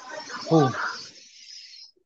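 Steady high hiss from a participant's unmuted microphone on a video call, cutting off just before the end, with a brief spoken "Oh" over it.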